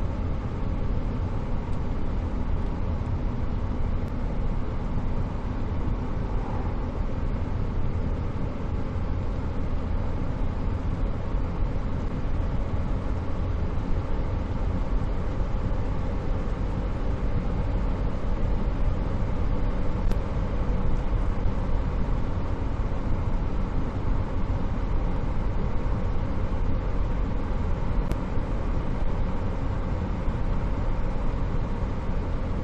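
1965 Chevrolet Corvair on the move: its rear-mounted air-cooled flat-six engine running together with road and tyre noise as a steady, low rumble that holds even throughout.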